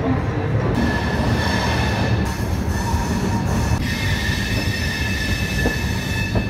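Indian Railways double-decker AC express train pulling out and rolling slowly, heard at an open coach door: a steady low rumble of the running gear. A steady high-pitched whine joins it about a second in.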